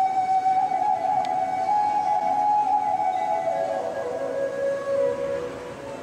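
A solo flute playing a slow melody of long held notes, stepping down to lower notes a little past the middle.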